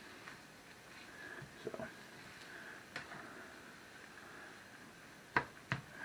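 Faint stirring of ground meat, onion and mushrooms in a nonstick skillet with a plastic slotted spatula, over a low steady hiss. Two sharp clicks come close together near the end.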